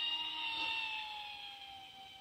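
Electric motors and propellers of a DIY VTOL RC plane whining in forward flight as it flies away, the pitch falling slowly and the sound fading.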